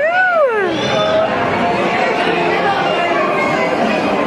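A baby's high-pitched squeal that rises and then slides down in pitch over about the first second, followed by the steady chatter of many people.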